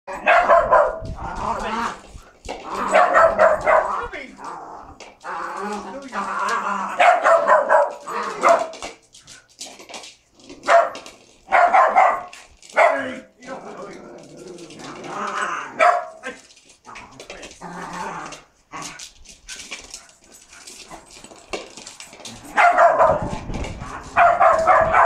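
Small terriers barking in repeated bursts of about a second each, with short gaps between them, while they play over a ball. Scattered light knocks are heard between the barks.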